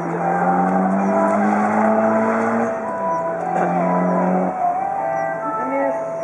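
Mitsubishi Lancer Evolution VI's turbocharged 2.0-litre four-cylinder engine held at high revs as the car is driven hard, its pitch dipping briefly about three seconds in, then fading away after about four and a half seconds.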